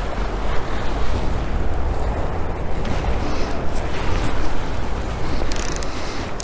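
Wind buffeting the microphone with a deep, uneven rumble over a steady rush of open sea.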